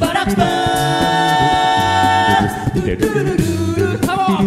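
A cappella group singing: several voices hold a chord over a sung bass line, with beatboxed percussion keeping the beat. The held chord releases about two and a half seconds in, leaving the bass and vocal percussion running.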